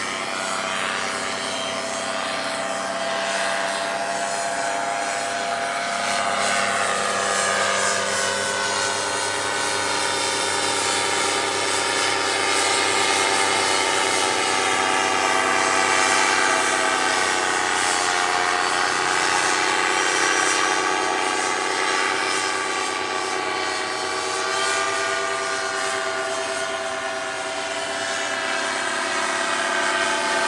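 Paramotor engine and propeller running in flight overhead, a steady drone whose pitch drifts slowly down and back up as the aircraft moves.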